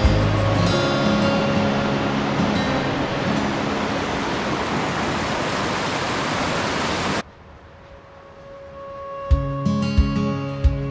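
White water of a rocky mountain creek rushing over cascades, a steady loud rush that cuts off suddenly about seven seconds in. Background music fades out at the start and comes back near the end.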